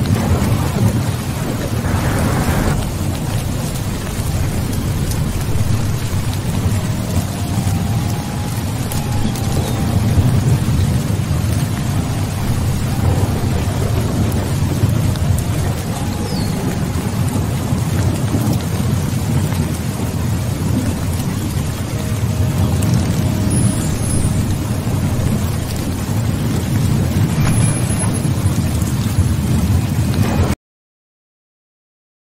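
Rain-and-thunder ambience: steady rainfall over a continuous low rumble of thunder, with a brief louder burst about two seconds in.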